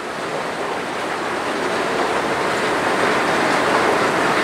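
Escalator running while carrying a rider down: a steady mechanical running noise from the moving steps, growing gradually louder.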